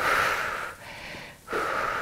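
A woman breathing hard from exertion during a cardio exercise: two heavy breaths, one at the start and another about a second and a half in.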